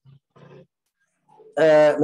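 A man's voice only: two faint short sounds at the start, a brief pause, then a loud drawn-out vowel sound about one and a half seconds in that runs on into speech.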